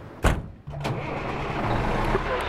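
A loud thump, then a semi-truck's engine starting up and settling into a steady low-pitched running sound.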